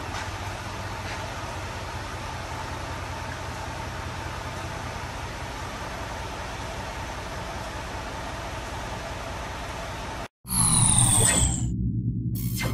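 Steady low rumble and hiss of a pickup truck's engine idling. About ten seconds in the sound cuts out for a moment, then a loud whooshing sound effect with falling tones over a low drone starts.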